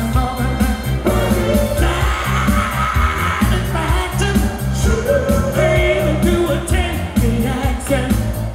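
Disco music with a steady bass beat played loud over a concert PA, with a male vocal group singing live over it.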